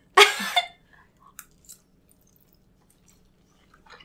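A brief vocal sound in the first half second, then faint, sparse mouth clicks of chewing as forkfuls of spaghetti are eaten.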